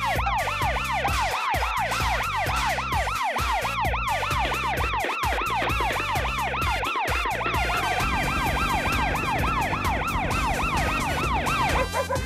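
Fire-station alarm siren in a cartoon, a fast yelping wail rising and falling about three times a second, calling the firefighters out. It sounds over background music with a steady beat, which changes about two-thirds of the way through.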